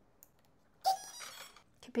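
Electronic speed controller of an RC plane sounding its power-up tone as the battery is connected: a sudden, high-pitched electronic tone starting about a second in and lasting under a second.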